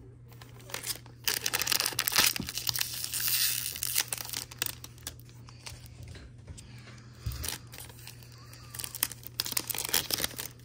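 Wrapper of a baseball card pack being torn open and crinkled in the hands. Loud crackling for about three seconds starting about a second in, then quieter handling with a few more crinkles near the end.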